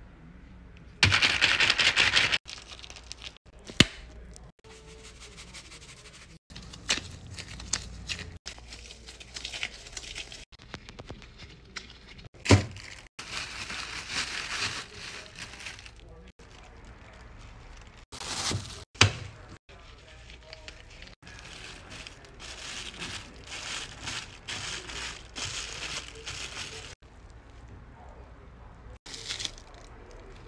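Plastic bag crinkling and crackling as a sticky homemade taffy mix is worked by hand, along with a plastic spoon stirring the paste in a plastic tub, cut into many short clips. Three sharp cracks stand out, about 4, 12 and 19 seconds in.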